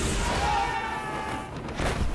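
Film sound effects of a transport plane blowing apart in mid-air: a deep rumble of explosion and debris, with a held pitched tone about half a second in and a sharp hit near the end.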